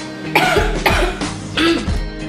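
A woman crying, with three short, choked sobs over slow background music; the last sob has some voice in it.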